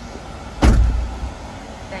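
A van door slamming shut, one heavy thud about half a second in with a short low rumble after it, heard from inside the van.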